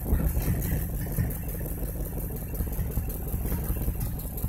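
1958 Chevrolet Delray's engine idling, heard from inside the cabin: a steady low rumble.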